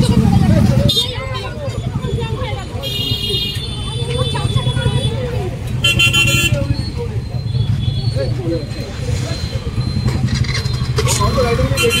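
Vehicle horns honking in stalled street traffic, two blasts about three and six seconds in, over a steady low engine rumble and people's voices.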